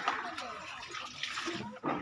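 Water running steadily from a water tanker's tap into a bucket, with faint voices behind it.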